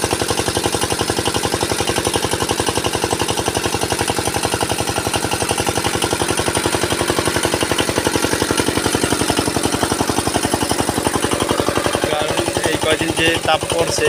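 Horizontal single-cylinder diesel engine driving an irrigation water pump, running steadily with a rapid, even firing beat, with water gushing from the pump outlet into a tank.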